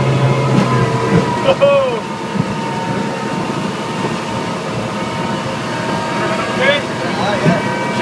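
Redbay RIB's engine running steadily under power at speed, with wind and water rushing past the hull and canopy.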